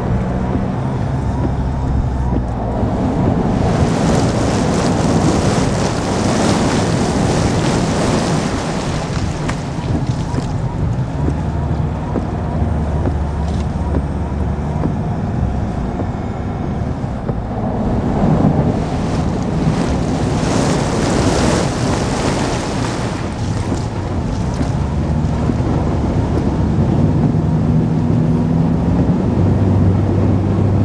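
Vehicle driving through floodwater and standing water on the road, heard from inside the cabin: tyres hissing and water spraying up against the body under a low steady engine hum. The spray swells louder twice.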